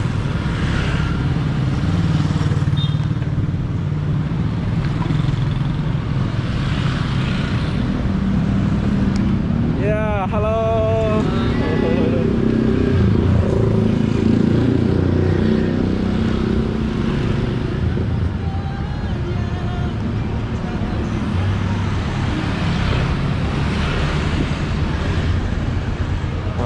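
Motorcycle traffic on a busy street: a steady rumble of engines and road noise. About ten seconds in, a brief wavering pitched tone rises over it.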